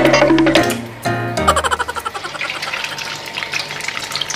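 Background music for about the first second and a half, then an egg frying in hot oil in a wok, sizzling with fine crackles.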